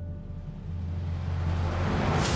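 A low rumble with a rising hiss swells steadily louder, a dramatic build-up sound effect leading into a whoosh.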